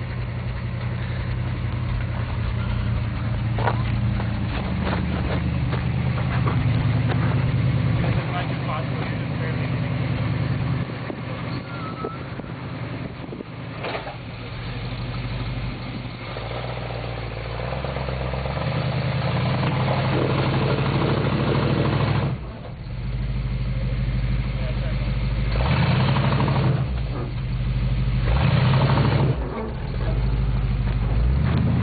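Flatbed pickup truck's engine labouring at low speed as it crawls over rocks, the revs rising and falling several times, mostly in the second half, with a few short knocks along the way.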